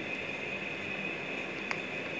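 Steady whir of an electric fan running, with one faint click near the end as the plug-in socket tester is pushed into the outlet.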